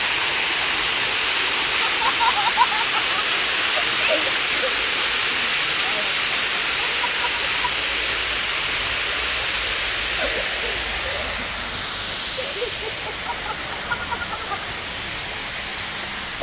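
Public fountain's water jets running: a steady rushing, splashing hiss that eases a little over the last few seconds.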